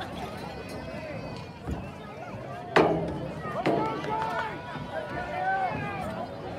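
Indistinct voices of players and spectators calling out across an outdoor football field. There is a sharp clap-like crack about three seconds in and a second one just under a second later.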